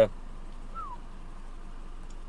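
Steady low running noise of a 2010 Subaru Forester's flat-four engine idling, heard from inside the cabin, with one short falling chirp a little under a second in.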